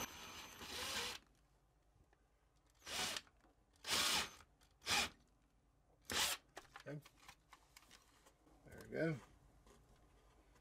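Cordless drill boring out a small hole in a wood panel to three-eighths of an inch, running until about a second in and then stopping, followed by four short bursts of the drill about a second apart.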